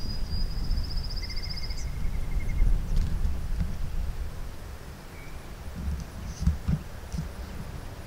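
Outdoor wind buffeting the microphone with a gusty low rumble, heavier in the first half. Over it come two short, rapid high-pitched trills in the first couple of seconds, one higher than the other, from small wildlife such as birds or insects. A couple of soft knocks follow near the middle.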